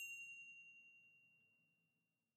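The ring of a single high, bell-like chime in a logo sound effect, fading away steadily over about two seconds.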